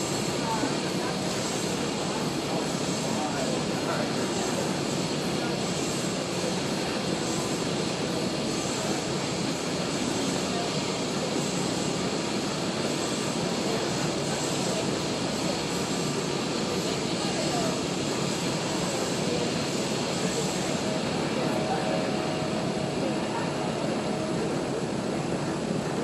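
A steady, even rushing noise that does not change, with faint voices underneath.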